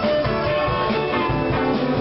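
Live country-rock band playing, with guitar, fiddle and drums, in an instrumental stretch between sung lines.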